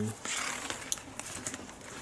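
Light handling noises: a short rustle about half a second in, then a few small clicks, as wires are picked up and moved over a cardboard work surface.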